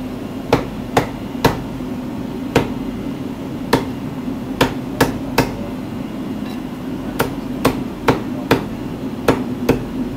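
Meat cleaver chopping a raw rabbit carcass on a thick wooden chopping block: about fourteen sharp chops in short runs with brief pauses between. A steady low hum runs underneath.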